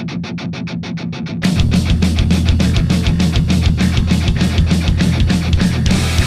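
Punk rock song: an electric guitar strums a fast, even rhythm alone. About a second and a half in, the full band comes in with heavy bass and the music gets much louder.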